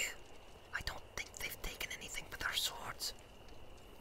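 Whispered speech: a man's voice reading dialogue in a hushed, breathy whisper, in short phrases.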